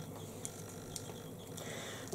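Quiet room tone with a steady low hiss and a few faint ticks.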